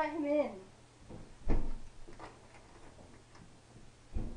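Thuds and knocks on a wooden apartment door, one heavy thud about a second and a half in, louder than the rest, with lighter knocks around it. A person's voice ends about half a second in.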